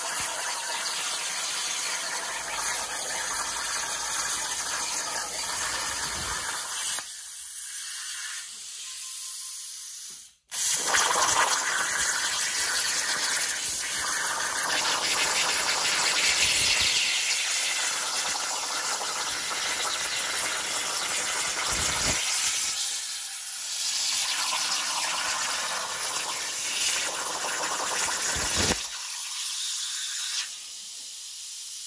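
CNC plasma torch cutting quarter-inch abrasion-resistant steel plate over a water table: a loud, steady hiss of the arc. It goes quieter for a few seconds and breaks off for an instant about ten seconds in, then resumes, and it cuts off near the end as the cut finishes.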